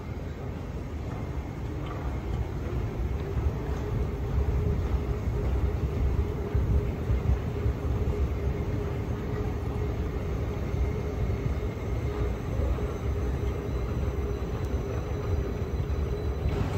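Airport moving walkway running beneath the rider: a steady low mechanical rumble with a faint constant hum, growing a little louder over the first few seconds.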